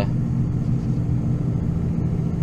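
Steady low hum of a vehicle's engine and running noise, heard from inside the cab.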